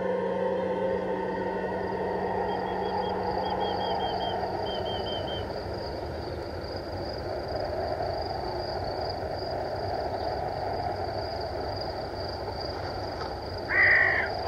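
Outdoor nature ambience: a steady background with a thin high whine, three short runs of faint bird chirps a few seconds in, and a loud crow-like caw at the very end. A low musical drone fades out in the first few seconds.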